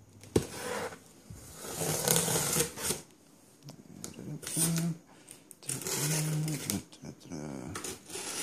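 A hobby knife slicing through packing tape along the seams of a cardboard box, in several scratchy strokes. A man's low wordless vocal sounds come with some of the strokes.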